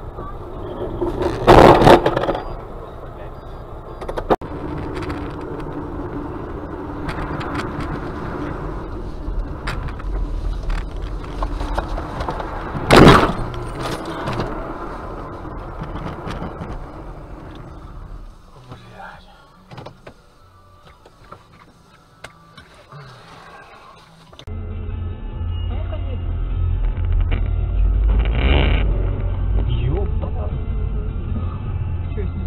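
Dash-cam audio of cars on the road with two loud crash impacts, one about two seconds in and another about thirteen seconds in; near the end a steady low engine and road rumble.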